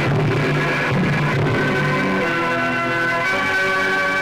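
Instrumental interlude of an old Malayalam film song, with no singing. Lower held notes give way to higher sustained notes about halfway through.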